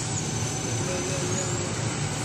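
Semi-automatic aluminium foil rewinding machine running, a steady mechanical noise with a thin high whine that drops a little in pitch just after the start and climbs back near the end.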